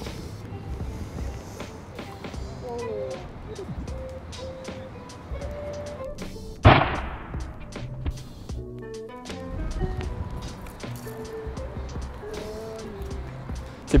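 Background music with a melody, and about seven seconds in a single sharp, loud impact: a brick dropped onto a cheap bicycle helmet lying on the ground.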